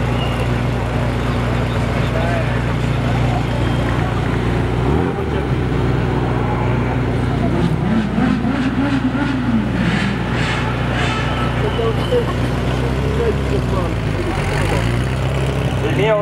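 Ferrari sports car engines running at low speed, a steady low drone with a rev that rises and falls in the middle and a rising note near the end as a car pulls away. Crowd voices sit underneath.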